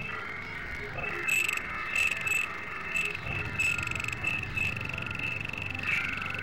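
Layered experimental audio mix: short, high, chirp-like pulses come about twice a second, irregularly spaced, over a steady high tone and a low rumble.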